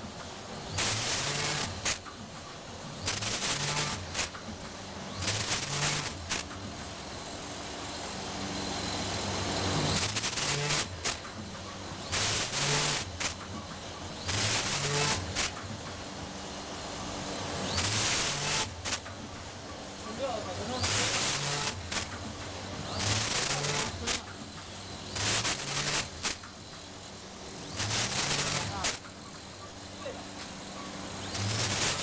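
Vertical form-fill-seal packaging machine running, with a loud burst about every two seconds over a steady low motor hum, as the machine pulls film and cycles through each bag.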